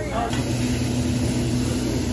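Steady restaurant background noise: a low hum that sets in just after the start, with a brief bit of faint voice before it.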